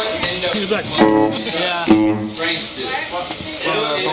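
Amplified electric guitar noodling before a song: a couple of notes or chords struck about one and two seconds in, each left to ring.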